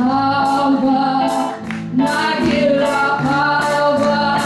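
A woman sings a Hebrew song live into a microphone in long held, slightly wavering notes, backed by electric guitar and a low accompaniment.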